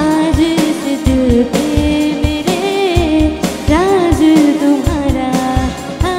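Loud live song: a woman singing an Indian-style melody through the PA, backed by a band with a steady drum beat.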